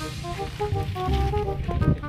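Background music: a melody of short held notes stepping up and down over a repeating low bass.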